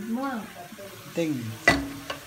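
A wooden spoon stirring braised red cabbage in a metal pot over faint sizzling, with a single sharp knock near the end.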